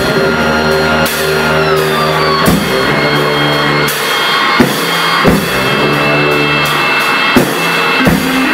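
Live band music: a held, droning electronic keyboard chord with a few sparse, irregular drum and cymbal hits. One high tone slides slightly downward about two seconds in.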